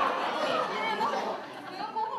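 Indistinct voices and crowd chatter in a hall, getting quieter near the end.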